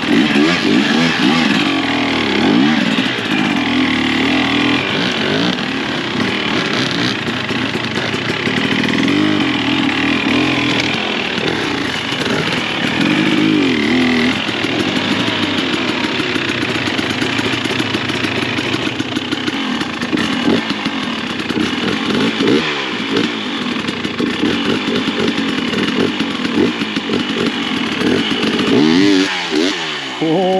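KTM XC 300 TBI two-stroke dirt bike engine revving up and down in short, uneven bursts of throttle at low speed, with a second dirt bike running close by.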